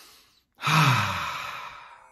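A man's deep breath: the tail of a long inhale fades out, and about half a second in he lets out a long, audible sigh with a voiced tone that falls in pitch and fades away.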